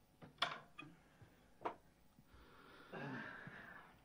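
Faint knocks and clinks of glassware handled on a table, the two sharpest about half a second and a second and a half in. A faint low voice follows near the end.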